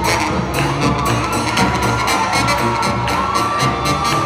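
Live swing band with brass playing an up-tempo tune with a steady drum beat and a long held note, while the crowd cheers and whoops.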